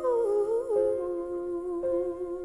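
Female voice humming a wordless, wavering run over held piano chords, with a new chord struck near the end.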